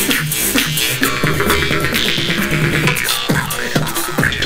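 Two jaw harps (vargans) played together over live beatboxing: a twanging drone whose overtones rise and fall, set against a steady beatboxed rhythm.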